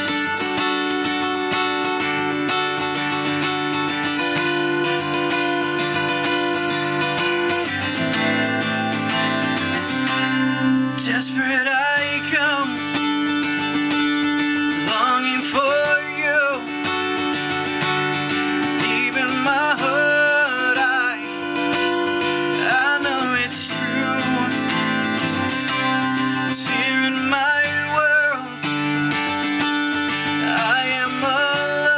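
Acoustic guitar playing chords, with a man singing over it from about a third of the way in, in phrases a second or two long.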